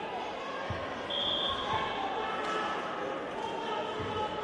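Voices calling out in a large sports hall, with a few dull thuds in the first two seconds as the wrestlers go down onto the mat in a takedown. A short high tone sounds about a second in.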